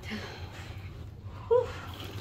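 A woman's short breathy exclamation, "whew", about a second and a half in, over a low steady hum.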